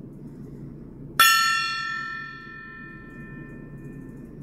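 Small brass tabletop gong struck once with a mallet about a second in, ringing with several bright tones that fade over the next few seconds, the higher ones dying out first. A steady low hum runs underneath.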